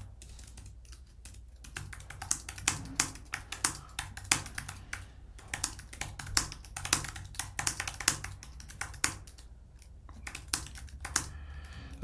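Typing on a computer keyboard: quick, irregular runs of keystroke clicks, with a short break about ten seconds in.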